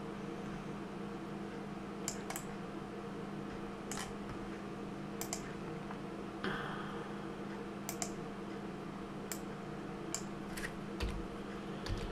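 Scattered single clicks of computer keys and a mouse, a second or more apart, over a steady low electrical hum.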